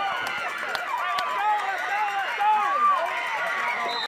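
Football crowd and sideline yelling and cheering during a play, many voices shouting over one another.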